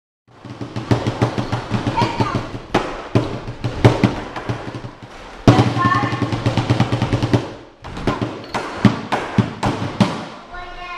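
Lion dance percussion: a drum struck in quick, uneven strokes with cymbals crashing over it, starting a moment in.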